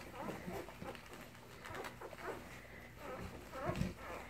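Newborn Labrador retriever puppies, three days old, making faint scattered squeaks and grunts as they nurse, with a louder low bump near the end.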